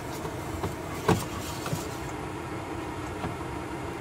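Small knocks and clicks of a metal tumbler being picked up and handled, the loudest about a second in, over a steady background hum.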